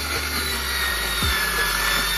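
Cordless circular saw cutting through a sheet of plywood, running steadily with a thin whine over the noise of the blade in the wood. Background music with a beat plays underneath.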